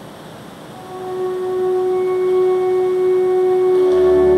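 Organ music begins about a second in with a single held note, and a higher tone joins it about two seconds in. Before the note starts there is a steady hiss of room noise.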